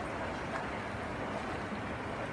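Steady rush of flowing river water, an even hiss that holds at one level throughout.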